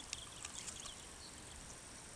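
Faint outdoor ambience: a steady, high, thin insect drone, with a few faint short chirps and a small click in the first second.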